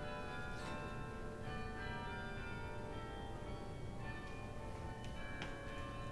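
Faint bells ringing: many steady, overlapping tones at different pitches, each new stroke sounding while earlier ones still hang and fade, with a soft click or two.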